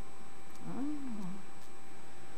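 A person's voice: one drawn-out hum or vowel whose pitch rises and then falls, starting about two thirds of a second in, with a couple of faint clicks.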